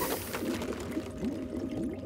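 Cartoon sound effect for a flying saucer with a broken engine: a steady noisy hiss with low, wavering tones and a faint steady hum under it.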